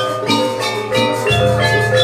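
Live gamelan ensemble accompanying a jaranan dance: bronze metallophones struck in a quick run of ringing notes, about four a second, over drum beats.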